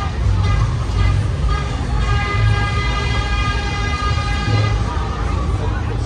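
Busy funfair sound: crowd voices over heavy bass from ride music, with a long steady horn tone that starts about two seconds in and holds for almost three seconds.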